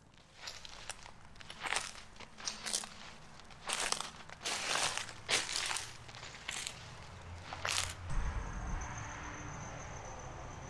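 Footsteps crunching and rustling through dry fallen leaves, an uneven step every half second or so. The steps stop about eight seconds in, leaving a steady faint hiss with a thin high whine.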